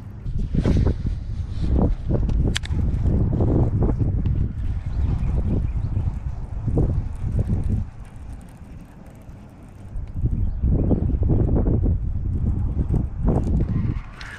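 Wind buffeting the camera microphone: irregular low rumbling in two long stretches, with a quieter spell about eight to ten seconds in and a single sharp click a little after two seconds.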